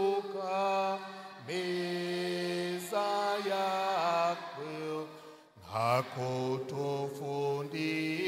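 A man singing unaccompanied into a microphone, a slow chant-like hymn of long held notes that glide from one pitch to the next, with a short breath about five and a half seconds in.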